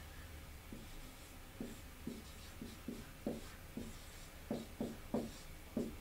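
Dry-erase marker writing on a whiteboard: about a dozen short, separate strokes starting about a second in.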